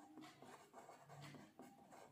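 Faint scratching of a marker pen writing on paper, in short strokes.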